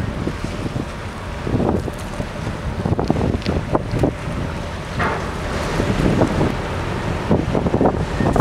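Wind buffeting the microphone: a steady low rumble with irregular gusting surges.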